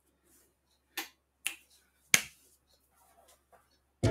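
Three sharp clicks, about half a second apart with the third the loudest, then a few faint ticks near the end.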